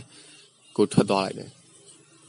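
A man narrating in Burmese: one short spoken word about a second in, between quiet pauses.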